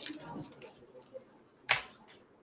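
Sheets of paper rustling as a stack is handled on a desk, then one sharp, loud paper snap or slap a little before the end.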